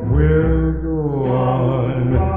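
Doo-wop vocal group holding one long harmony chord over a sustained deep bass note, the voices sliding up into it at the start. The sound is narrow and dull at the top, typical of a 1955 single.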